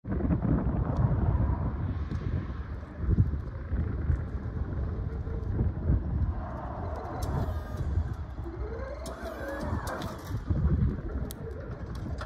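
Haulotte Star 6P battery-electric mast lift driving slowly across asphalt, its small wheels rolling, with an uneven low rumble throughout and a brief wavering tone partway through.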